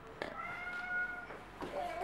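A baby's high-pitched vocal squeal: one steady held note lasting about a second, followed by a fainter short rising call near the end.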